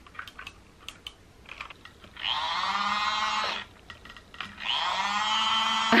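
Battery-powered toy mini washing machine's small electric motor whining in two short runs, the first about a second and a half long, with a few handling clicks before them. The motor is labouring: a makeup sponge swollen with water has grown too big and heavy for the drum to turn.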